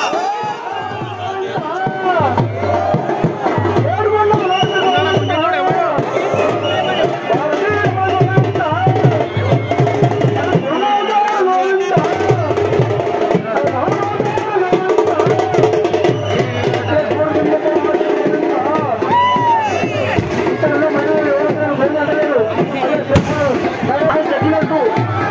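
A festival crowd with drumming and many overlapping voices shouting and singing. The drum beat drops out briefly about halfway through.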